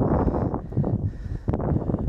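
Wind gusting over the camera's microphone, a rough, fluctuating rush.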